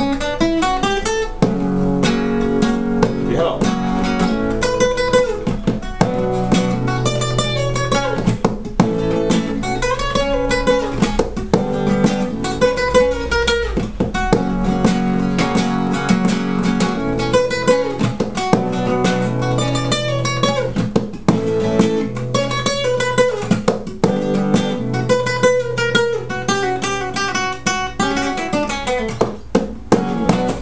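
Spanish guitar played in a rumba rhythm: quick strummed strokes mixed with a picked melody, playing without a break.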